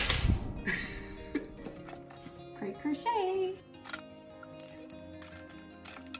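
Background music with a steady beat, over handling noises at a table. Right at the start there is a loud rustle of plastic packaging with a thump, followed by a few brief rustles and taps.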